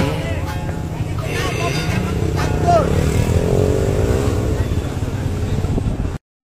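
A motorcycle engine running steadily beside a crowd, with several people talking indistinctly over it.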